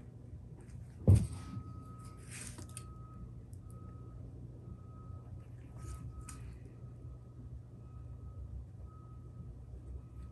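Quiet workshop handling sounds over a steady low hum: a single sharp knock about a second in, then a few faint, brief scrapes and rustles as a thin metal sheet is marked out with a marker on the bench.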